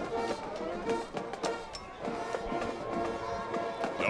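High school marching band playing: held brass notes over frequent sharp drum hits.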